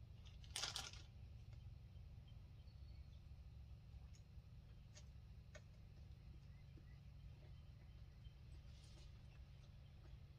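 A plastic zip-top bag crinkles briefly about half a second in as a hand reaches into it, followed by a few faint clicks and a soft rustle near the end, over a low steady hum.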